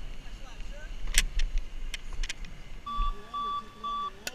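Low rolling and wind noise on a helmet-mounted camera as a BMX bike moves along pavement, with a few sharp clicks, then three short electronic beeps about half a second apart near the end.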